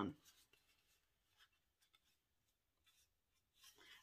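Near silence, with a few faint rustles and small ticks of white card stock being folded and creased by hand.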